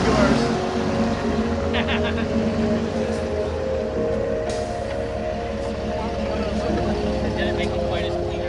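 Jeep Wrangler engine running at low revs as it crawls over rock, under background music with sustained chords, with a few brief indistinct voices.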